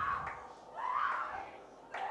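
Voices in the hall calling out in prayer, with one drawn-out wavering cry about a second in.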